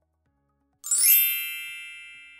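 A bright, chime-like ding sound effect that strikes once, a little under a second in, and then rings out slowly as it fades.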